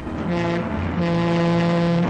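Low steady horn blast from a cartoon train: a short blast, then a longer held one.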